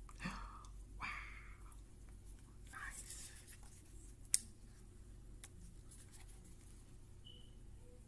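Quiet handling of a Sony ZV-1 compact camera as it is powered on and its buttons are worked: soft rustles in the first few seconds and one sharp click a little over four seconds in, with a few fainter ticks after.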